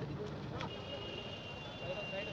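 Background voices over the low, steady rumble of an idling police SUV engine. A click about half a second in is followed by a thin, steady high-pitched beep that continues to the end.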